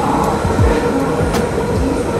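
London Underground Central line tube train running into a station platform, a loud, steady noise with a few sharp clicks.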